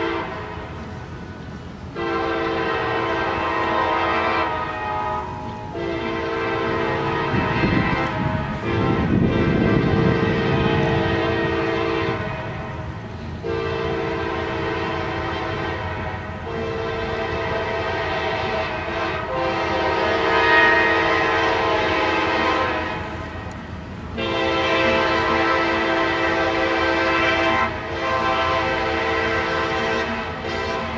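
Multi-chime locomotive air horn on CSXT 4015, an SD40-3, sounding a chord in a series of long blasts with brief breaks, one held for about eight seconds, as the train approaches grade crossings. A low rumble swells under it about eight seconds in.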